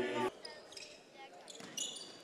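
Basketball court sounds in a gym: short, high sneaker squeaks on the hardwood near the end, with the ball bouncing under low crowd noise.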